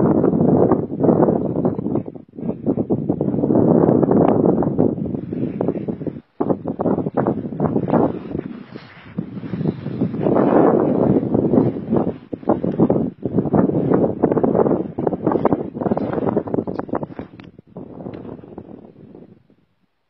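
Strong wind buffeting the microphone, coming in loud gusts with short lulls and dying down near the end.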